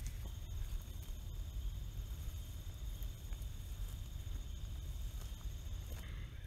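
Low rumble and rustle of someone walking through tall, dense field grass, the microphone buffeted and brushed as it moves. A faint, steady high insect trill runs underneath.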